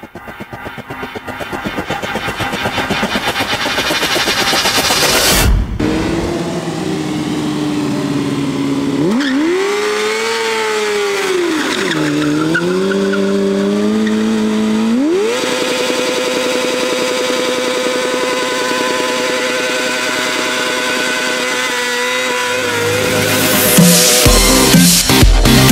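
Honda CBR sport bike's inline-four engine revving hard through a smoking rear-tyre burnout: its pitch dips and climbs back up around the middle, then holds high and steady for several seconds. Before it, a rising swell builds in loudness to a sudden hit about five seconds in.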